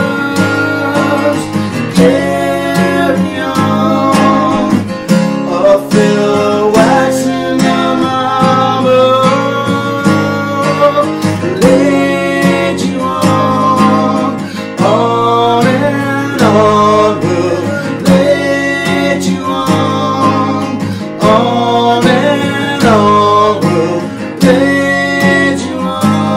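Steel-string dreadnought acoustic guitar strummed in a steady rhythm, with two men's voices singing a wordless 'mmm hmm hmm' melody over it.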